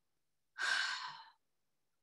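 A woman's single short breath close to the microphone, starting about half a second in and fading away, just before she starts to speak.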